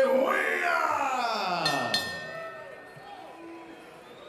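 Boxing ring announcer's long, drawn-out call of a fighter's surname, the held note sliding down in pitch over about two seconds and then fading away.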